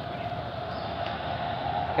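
Steady outdoor background noise with a faint, steady hum.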